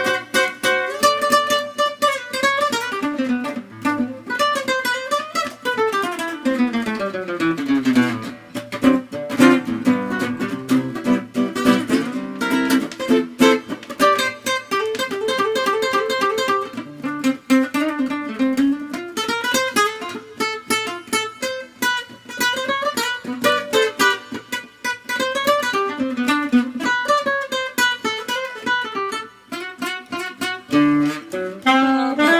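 Nylon-string classical guitar played solo, fingerpicked, with a fast descending run about six seconds in and a rising run later on.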